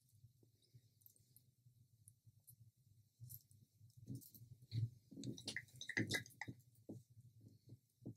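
Faint handling noise: scattered small clicks and short wet squishes as a palette knife works runny white paint in a small plastic cup. The sounds are busiest in the middle.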